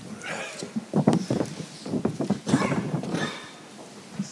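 A person's voice, indistinct and in short irregular bursts, with a few sharp knocks among them.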